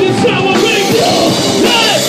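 Live heavy metal band playing loudly, with yelled vocals over the drums.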